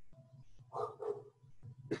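A dog barking faintly in the background: two short barks about a second in.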